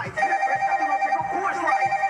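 Electronic telephone ringtone: a steady trilling tone that rings on without a break, over busier wavering sounds underneath.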